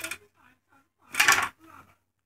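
Plastic board-game spinner flicked, giving a quick rattle of clicks for about half a second, a second in.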